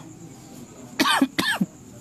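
A man coughs twice in quick succession, about a second in.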